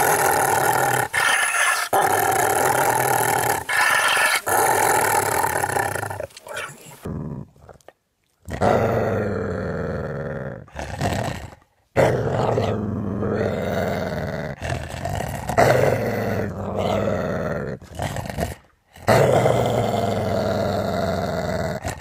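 Large dog growling, low and throaty, in long stretches broken by a few short pauses.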